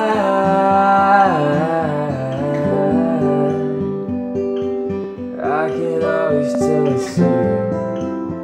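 Acoustic guitar and piano playing a slow indie-folk song, with wordless vocal slides about a second in and again past the middle.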